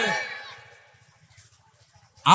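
A man's amplified voice ends a phrase through a microphone and PA, and the sound dies away over about the first second. The rest is a pause with only faint background.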